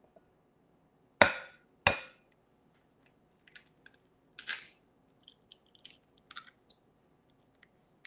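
An egg knocked twice against the rim of a bowl, two sharp taps less than a second apart, then small crackles as the cracked shell is pried open and pulled apart.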